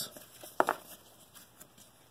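Baseball trading cards being shuffled through by hand: faint rustling and flicking of card stock, with two short sharp snaps a little over half a second in.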